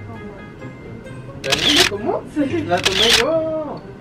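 Two camera shutter sounds, about a second and a half in and again about three seconds in, over background music with a voice gliding in pitch.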